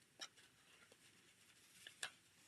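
Near silence with faint handling of paper card stock: a short light tap about a quarter second in and another small one near the end.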